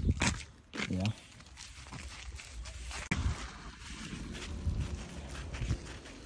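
Footsteps crunching irregularly through snow and dry grass, with one sharp tap about three seconds in.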